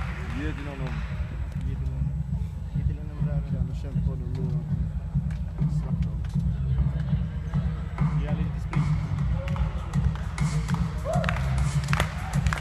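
Deep, pulsing bass from the hall's sound system, with people in the crowd talking near the microphone.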